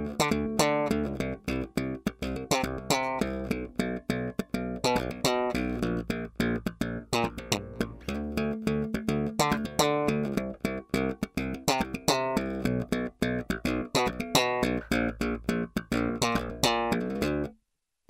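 Warwick Rock Bass Corvette electric bass played slap-style on its bridge pickup alone, volume full and treble and bass at half: a busy run of sharp thumped and popped notes that cuts off abruptly just before the end.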